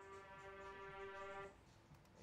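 Reversed synth note with reverb, rendered to audio and played back in Ableton Live: a faint single steady pitched tone that slowly swells and cuts off abruptly about one and a half seconds in.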